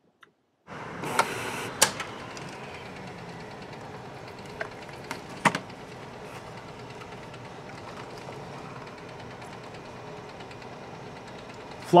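Canon imagePROGRAF PRO-1000 inkjet photo printer printing a card. It starts about a second in and runs steadily as the paper feeds and the print head moves, with a few short clicks.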